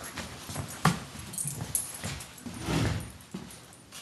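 Chesapeake Bay retriever making small vocal sounds while playing. A few sharp clicks and knocks come in the first two seconds, and a louder rough sound swells near the end.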